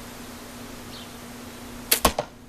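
A compound bow shot near the end: a sharp, loud snap as the string is released and the arrow leaves for the water jug.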